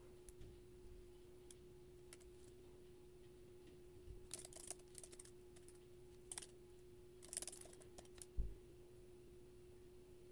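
Faint typing on a computer keyboard in a few short bursts of key clicks, mostly in the second half, over a steady low hum.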